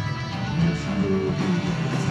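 Indie rock band playing live with no vocals: two electric guitars strumming over bass guitar.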